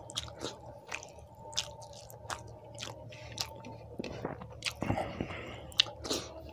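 Close-miked chewing of a mouthful of rice, with wet mouth clicks and smacks roughly every half second over a faint steady hum.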